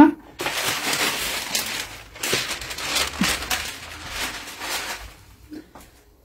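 Brown kraft pattern paper being handled and shifted across a table, rustling and crinkling for about five seconds, then dying away near the end.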